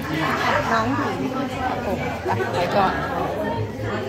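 Speech: people talking, with voices overlapping in chatter.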